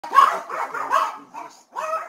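Dogs barking wildly, in three quick runs of barks.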